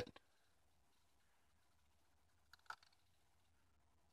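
Near silence: a faint steady low hum, with one faint click about two and a half seconds in from a button being pressed on the variable frequency drive's keypad.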